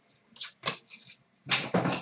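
Trading cards being flicked through by hand and tossed down onto a pile on a glass counter. A few short, sharp rustles come first, then a louder flurry of card noise from about halfway in.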